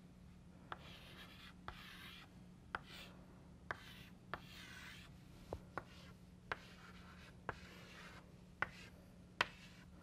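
Chalk writing on a blackboard: faint scratchy strokes as circles and letters are drawn, with sharp taps of the chalk striking the board about once a second.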